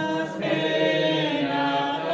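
A choir singing a slow communion hymn in long held notes, the voices filling out about half a second in.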